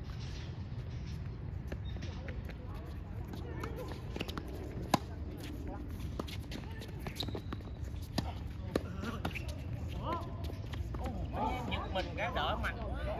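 Tennis ball struck by rackets and bouncing on a hard court during a doubles rally: a series of sharp pops at irregular intervals, the loudest about five seconds in, with voices near the end.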